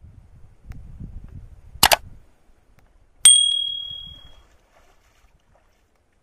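Subscribe-button sound effect: a quick double mouse click, then a single bell ding about a second and a half later that rings out and fades over about a second.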